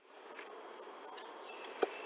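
Faint, steady background hiss with one short, sharp click near the end.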